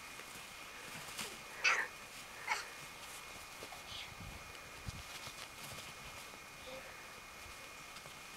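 Faint, distant children's voices over a quiet open-air background: two short high-pitched yelps close together about two seconds in, then only a few fainter calls.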